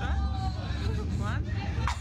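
A woman and a girl talking over a steady low rumble, with one short sharp noise near the end.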